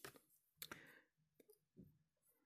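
Near silence broken by a few faint clicks and light handling noise as a crochet hook and lace crochet work are picked up and handled.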